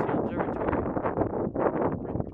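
Wind buffeting the camera's microphone in a dense, irregular rumble.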